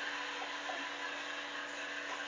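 Steady hiss with a low electrical mains hum underneath.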